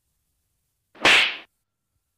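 A single sharp swish sound effect about a second in, lasting about half a second.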